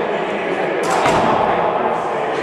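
A single sudden thump about a second in, over continuous voices.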